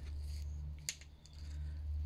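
Quiet handling of pea seeds in a compost-filled plastic seed tray: a single sharp click a little under a second in, over a low steady hum.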